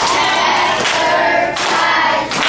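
A class of fourth-grade children saying the word 'advertisement' together in unison, broken into its syllables on the teacher's count.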